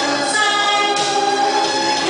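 A woman singing into a microphone over backing music, with long held notes that glide between pitches.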